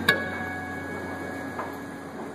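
Takamine acoustic guitar struck once in a chord right at the start, then left to ring and fade away as the song's last chord.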